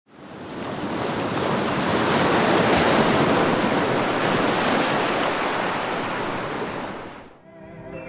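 A single ocean wave rushing in and washing back out, swelling over the first couple of seconds and fading away near the end. Music with held notes begins as it dies out.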